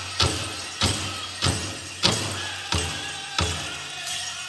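Powwow big drum struck in unison in a steady beat, about one and a half beats a second, each stroke ringing out before the next, accompanying a Prairie Chicken contest dance song.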